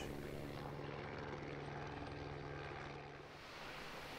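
Helicopter in flight with a bait bucket slung beneath, heard faintly as a steady engine and rotor drone that dies away a little after three seconds in.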